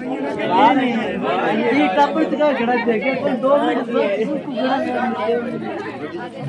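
Many people talking at once, with overlapping voices of men, women and children forming steady crowd chatter.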